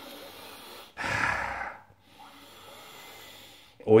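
A man sniffing a glass of beer to smell it, breathing in through the nose: one louder sniff about a second in, with fainter breaths before and after.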